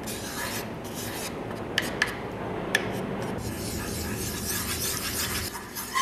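Flat wooden spatula stirring and scraping steadily around the bottom of a small cooking pot, breaking up lumps of powdered growing medium in water, with a few light clicks as it knocks the pot.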